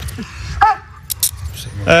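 Metal handcuffs jangling and clicking as they are put on a suspect's wrists: a few quick, bright metallic clinks a little after a second in.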